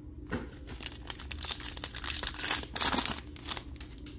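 A foil trading card pack wrapper being torn open and crinkled: a run of crackling that starts about half a second in, is loudest near three seconds and dies away before the end.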